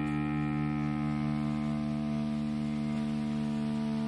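Distorted electric guitar through an amplifier, one chord held and left ringing out steadily.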